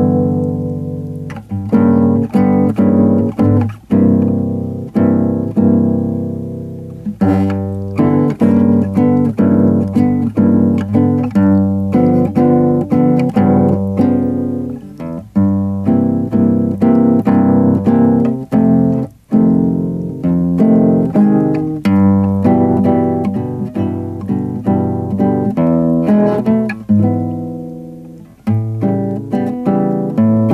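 Nylon-string classical guitar played fingerstyle: a blues in G voiced as dark chords low on the neck, with brief breaks between phrases about two-thirds of the way through and near the end.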